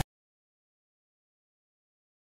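Silence: the sound track cuts off abruptly at the start and stays dead silent.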